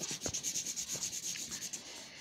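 Pencil scribbling on paper in quick back-and-forth strokes, colouring in a drawing; the strokes ease off near the end.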